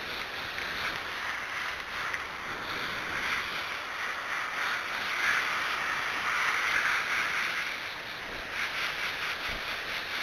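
Water spraying from a garden hose spray nozzle onto a horse's wet coat: a steady hiss that swells louder a little past the middle and eases off near the end.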